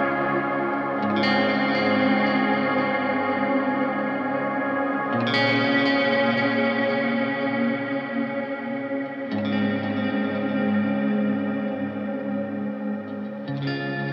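Background music: sustained, layered chords that change about every four seconds.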